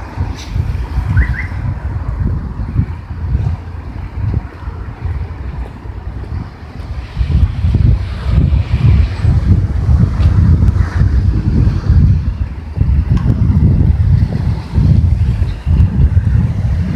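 Wind buffeting a handheld camera's microphone in uneven low gusts, growing heavier from about seven seconds in.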